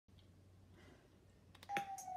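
Quiet room tone, then a few clicks and a steady beep-like tone that starts near the end and holds.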